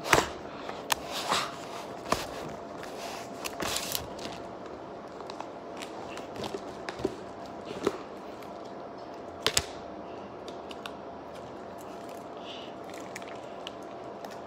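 A jelly pocket's wrapper being opened and handled: scattered crinkles and sharp clicks, the strongest near the start, about four seconds in and about nine and a half seconds in, growing sparser toward the end.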